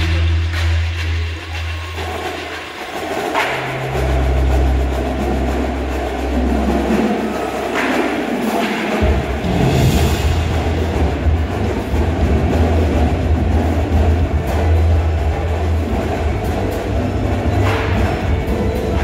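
Indoor percussion ensemble playing: long, low electronic bass tones from the speakers under drum and keyboard-percussion parts, the bass shifting about four and nine seconds in, with sharp strokes at about three and eight seconds in.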